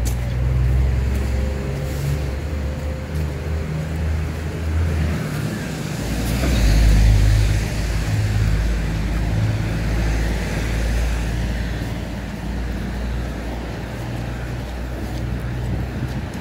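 Street traffic: a motor vehicle's engine running close by with a steady low rumble, growing louder and hissier about six to eight seconds in as a vehicle passes.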